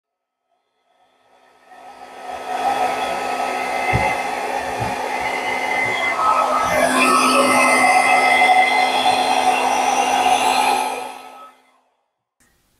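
Hair dryer running steadily, blowing poured acrylic paint outward across a canvas; it fades in and out, with a few low bumps partway through.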